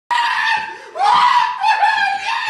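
A man screaming with joy in a run of high-pitched shrieks: a long held cry, then a second that rises in pitch about a second in, then more cries.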